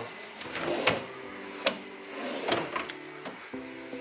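Background music with steady held tones, over which come three or four sharp knocks from a wooden dresser's drawers and metal bar pulls being handled.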